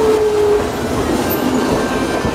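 Hiroden streetcar passing close by on street-level rails. Its loud run of wheel and rail rumble carries a steady whine that sinks a little in pitch and fades in the first half second.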